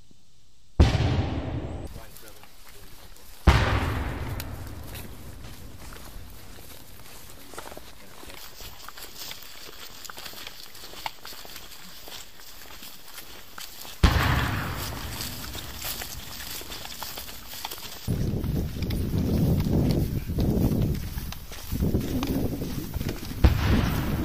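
Four loud bangs, each followed by a long fading rumble: the first two close together near the start, one in the middle and one near the end. Rough, rustling noise thickens in the last few seconds.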